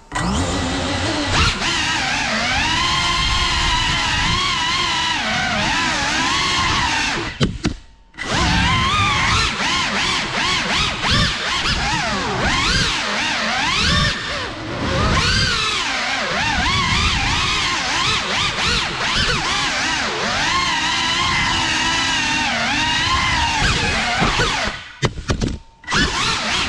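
GEPRC Cinelog 35 3.5-inch ducted cinewhoop on 6S, its four brushless motors and props whining, the pitch rising and falling with the throttle. About eight seconds in the motors cut almost to nothing and then spool back up. Near the end they drop off again, with a few short sharp blips.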